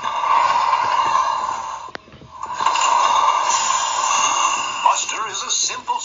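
Two long hisses of steam, each about two seconds, with a short gap between them. A man's narration starts near the end.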